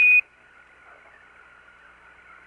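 Quindar tone: one short, steady beep, about a quarter second long, marking the end of Mission Control's radio transmission. It is followed by the faint hiss of the open air-to-ground radio channel.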